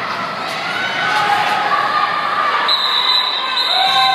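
Roller skates rolling and knocking on the floor as a pack of roller derby skaters goes by, under crowd chatter. A steady high tone comes in near the end.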